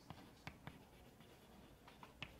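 Chalk writing on a chalkboard: faint taps and scratches of the chalk strokes, a few short ticks spread through the moment.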